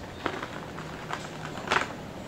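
Light handling noises from a boxed action figure and its packaging: a few small clicks and rustles, the sharpest one near the end.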